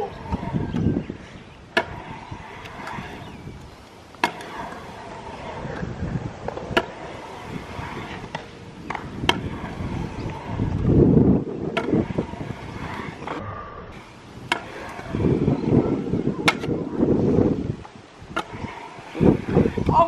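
Stunt scooter wheels rolling on a concrete bowl: a low rumble that comes and goes in several runs, loudest about ten to twelve seconds in and again about fifteen to seventeen seconds in. Scattered sharp clicks are heard between the runs.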